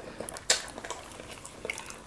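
Close-up eating sounds of people eating fufu and okra stew with their bare hands: soft wet mouth and finger sounds, with one sharp click about half a second in and a few fainter ticks.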